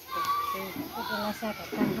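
High-pitched voices talking and calling out, like children at play, starting just after the opening moment.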